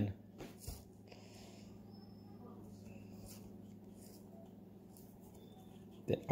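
Faint slide and flick of cardboard trading cards being moved from the front to the back of a hand-held stack, a few soft ticks and a short hiss in the first couple of seconds, over a steady low hum.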